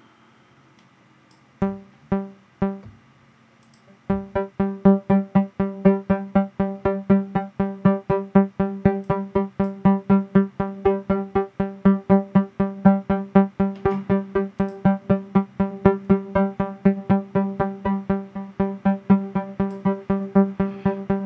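A synthesizer note played through a granular delay plugin whose dry/wet mix is swept by a 'bouncing ball' modulation envelope. A few separate notes come about two seconds in. From about four seconds in comes a rapid stream of repeats of the same pitch, about five a second, swelling and fading in loudness.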